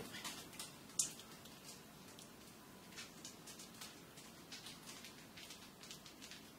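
Silicone spatula stirring thick chowder in a stainless steel stockpot: faint soft scrapes and clicks, with one sharper click about a second in.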